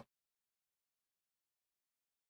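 Near silence: the audio is gated to nothing between words.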